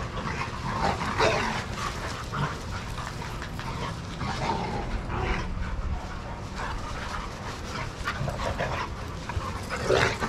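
A group of dogs playing, with short barks and vocal outbursts every few seconds, loudest about a second in and again near the end, over a steady low hum.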